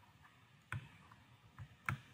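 A few short clicks over faint room hiss, the two loudest about a second apart.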